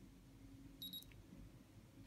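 A single short high-pitched electronic beep from the Nittan address programmer about a second in, as it finishes writing the new detector address and confirms OK. Otherwise faint room tone.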